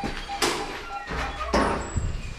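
Entrance door of an apartment block being opened and walked through, with two noisy clatters, the louder about one and a half seconds in. A short electronic beep repeats about four times a second and stops about half a second in.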